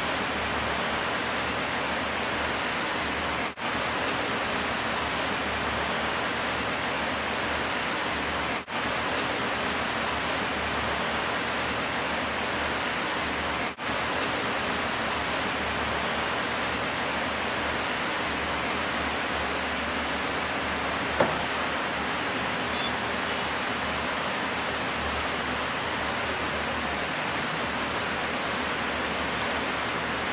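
Steady rushing noise like heavy rain or falling water, broken by three brief dropouts in the first half, with a single sharp click about two-thirds of the way through.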